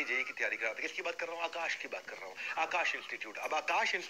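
Only speech: a man lecturing continuously in Hindi.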